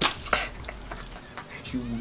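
Light knocks of hands on a tabletop: two sharper ones in the first half-second, then a few fainter taps.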